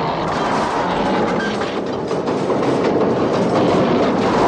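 Film sound effects of a train clattering on elevated tracks, with electrical sparks crackling from the rails as they are torn apart. The sound is a dense, steady racket full of small clicks.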